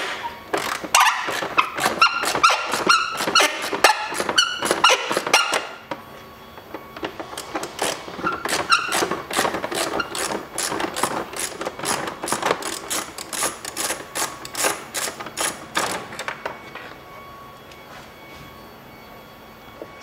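Hand socket ratchet clicking as a 10 mm bolt is unscrewed: a dense run of clicks over the first six seconds, then about four clicks a second until about sixteen seconds in, followed by quieter handling.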